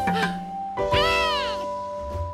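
A cartoon monkey's excited, wordless voice: a short call at the start, then one longer call rising and falling about a second in, over background music with held notes.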